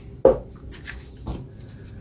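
A deck of tarot cards handled in the hands, gathered up and squared, giving a few soft taps and rubs of card against card.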